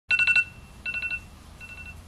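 iPhone wake-up alarm going off: groups of four quick, high electronic beeps, three groups about three-quarters of a second apart, the last group fainter.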